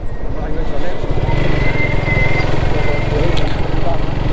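Motorcycle engine running steadily as the bike rides along at low speed, with road and wind noise.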